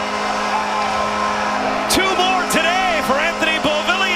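Arena goal horn sounding steadily under goal-celebration music right after a hockey goal.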